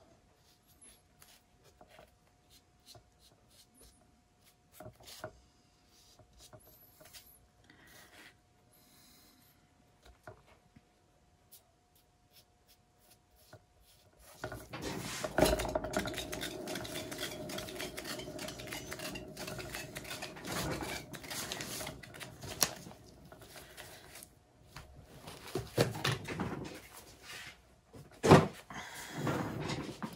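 Handling noise from a canvas on a round plastic turntable being worked and turned by gloved hands. At first there are only faint scattered clicks and rubs. About halfway a steadier rubbing, rolling noise starts and runs for about ten seconds, and a few louder knocks come near the end.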